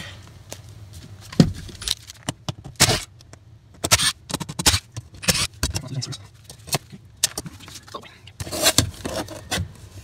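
Screws being backed out of a sheet-metal fuel pump access cover and the cover lifted off the tank opening: an irregular string of metallic clicks, knocks and scrapes.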